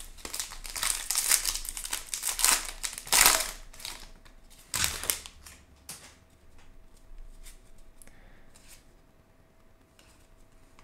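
Plastic-foil wrapper of a Topps baseball card pack crinkling and tearing open, loudest about three seconds in, with another sharp rip about five seconds in. The cards are then handled quietly with faint clicks and rustles.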